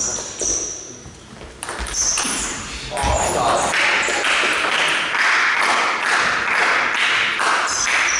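A table tennis ball pinging off bats and the table in a short rally, a few sharp hits in the first two seconds. From about three seconds in, that gives way to several seconds of loud noisy voices in the hall, the loudest part of the stretch.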